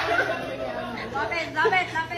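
Several people talking and calling out over one another.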